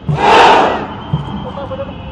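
Massed soldiers giving a loud shout in unison as part of a khukuri drill, strongest in the first second. It is followed by the steady noise of the parade ground, with a low thud about once a second.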